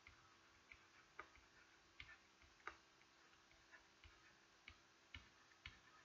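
Near silence with faint, irregular clicks and taps of a stylus writing on a pen tablet, about a dozen over several seconds.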